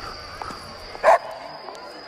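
A dog barks once, sharply, about a second in, over a steady high-pitched tone.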